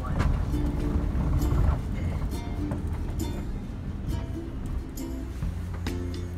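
Music with a regular beat over the steady low rumble of a van driving.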